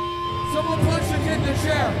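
Guitar amplifiers ringing on with steady held feedback tones after a hardcore punk song, with a few voices shouting over them and some low thumps.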